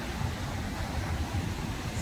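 Ocean waves breaking and washing up a sandy beach, with wind buffeting the microphone: a steady wash of noise, heaviest in the low end.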